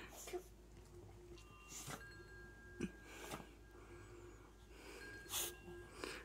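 A small wet dog's faint, short snorts and sniffs, about five of them spread over several seconds.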